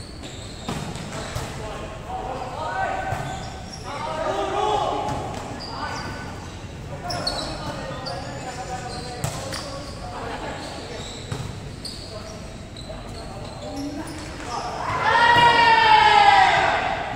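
Volleyball rally on an indoor court: the ball is struck by hands and forearms several times with sharp slaps, and players call out between the hits in an echoing hall. A loud, drawn-out shout comes near the end as the rally finishes.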